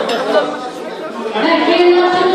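Chatter of many guests talking at once in a large hall. Near the end a voice comes in holding steady notes.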